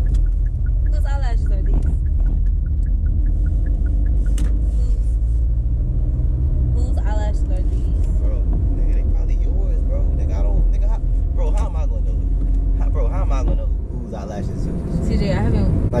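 Steady low road and engine rumble inside the cabin of a moving car, under a conversation. The rumble eases briefly near the end.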